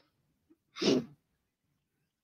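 A single short, breathy burst of a person's voice about a second in, otherwise quiet room tone.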